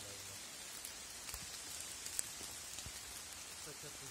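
Footsteps on dry leaf litter on a forest floor: a few scattered soft crackles and clicks over a steady high hiss.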